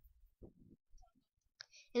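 A quiet pause holding a few faint, short clicks spread about half a second apart, before a voice starts speaking right at the end.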